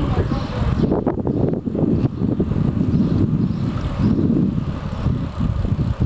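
Wind buffeting the microphone of a camera carried on a moving bicycle: a loud, uneven low rumble, with a few short rattles about a second in.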